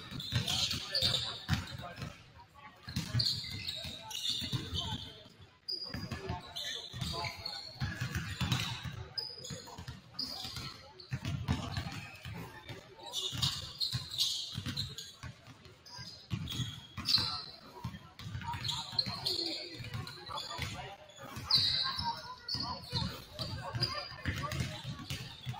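A basketball being dribbled on a hardwood gym floor, bouncing at an irregular pace. Short high squeaks from sneakers and players' voices ring in the large gym.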